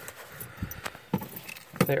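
A set of keys jangling as they are pulled out of a trouser pocket, with a few short clicks and some cloth rustling.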